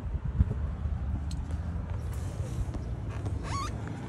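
Low steady outdoor rumble, with a few faint knocks about half a second in and a short rising squeak near the end.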